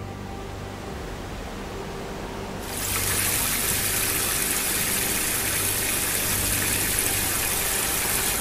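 Water jetting from a hose and splashing onto pavement, a steady hiss that comes in about a third of the way in and holds. Before it and beneath it runs a low steady hum.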